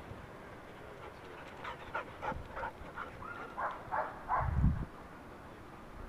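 Dog barking in a quick run of about nine short barks, roughly three a second, with a low thump near the last of them.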